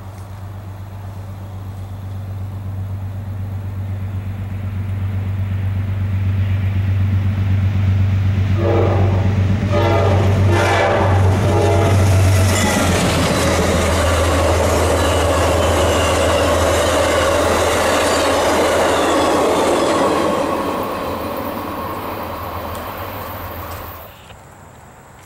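Amtrak GE B32-8WH diesel locomotive approaching with its engine drone growing louder. It sounds its horn in several blasts about nine to twelve seconds in as it comes past, then the passenger cars' wheels clatter over the rails and fade away near the end.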